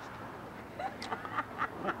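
A young woman laughing: a rapid run of short, staccato laugh bursts, about four a second, starting about a second in.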